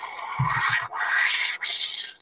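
Espresso machine hissing loudly as the shot finishes, the hiss broken twice, with a brief low rattle about half a second in.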